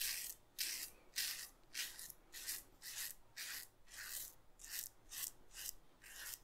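Romer 7 S1 hybrid double-edge safety razor with a Bic Chrome Platinum blade, open-comb side, cutting two days' stubble through lather: a dozen or so short scraping strokes, about two a second.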